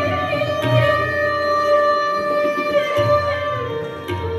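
Sarangi bowed in a Hindustani classical melody: a long held note with sliding ornaments, stepping down to a lower note near the end. Deep tabla strokes sound underneath, about a second in and again near three seconds.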